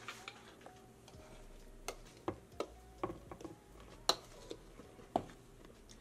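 A spoon knocking and scraping against mixing bowls as dry flour mixture is emptied from one bowl into another: a string of light, irregular clicks.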